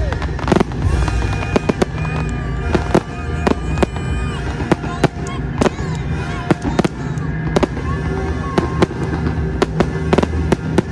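Fireworks display: bursting aerial shells giving a rapid, uneven run of sharp bangs, about two or three a second.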